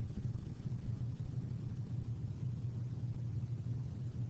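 Steady low hum of classroom room noise, with no other distinct sound.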